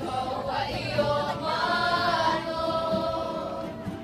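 A crowd of voices singing or chanting together in unison, swelling about a second in and holding a long note before it fades near the end.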